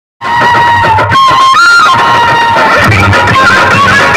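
A song played loud through a large rig of horn loudspeakers: a lead melody that bends and slides in pitch over a low bass line, starting abruptly just after the opening.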